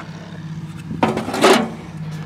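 A steady low hum with several even tones, like a small engine idling, with a brief knock or scrape of handling about a second in.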